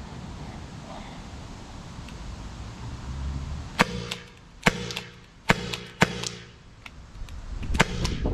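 Byrna SD CO2-powered launcher fired four times in quick succession, short sharp pops less than a second apart, starting a little past halfway through.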